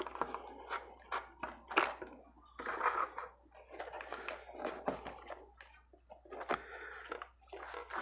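Handling noise from taking apart a small magnet device: a plastic PET bottle rotor and its base board being lifted, set down and turned over on a table. Irregular light clicks, knocks and rustles.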